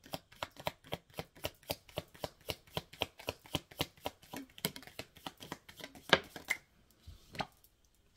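A deck of oracle cards being hand-shuffled, with a fast, even patter of card slaps, several a second. The patter stops about six and a half seconds in, and one or two single card snaps follow as cards are drawn.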